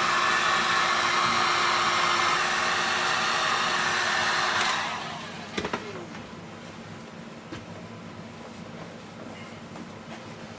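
Electric heat gun blowing steadily with a faint hum as it heats the vinyl skin of a car dashboard, switched off about five seconds in. Afterwards a few faint knocks.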